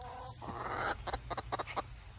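Chickens clucking, with a short call near the start and a run of quick sharp clicks in the second half.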